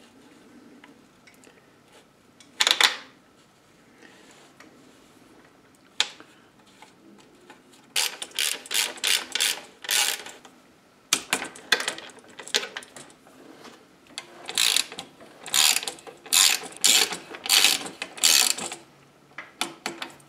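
Ratchet wrench clicking in short rapid runs with pauses between them as the upper rocker-arm pivot bolt of a Giant Maestro linkage is run in, after a couple of single clicks in the first few seconds.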